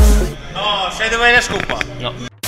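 Electronic dance music cuts off at the start with a low thump, then a person's voice calls out in bending, rising-and-falling exclamations over room noise.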